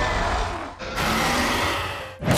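Two dinosaur roars from a toy T. rex's electronic sound effect, each rough and trailing away, the second starting about a second in.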